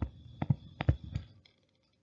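Stylus tapping and clicking on a tablet screen while handwriting: a quick run of light taps that stops after about a second.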